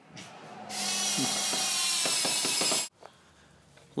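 Hand-held power drill running at a steady speed for about two seconds against a travel trailer's aluminium trim, then stopping suddenly, with a few light clicks before it starts.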